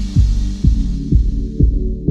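Electronic background music with a steady deep beat, about two beats a second, over held low notes; the treble fades away so it sounds increasingly muffled by the end.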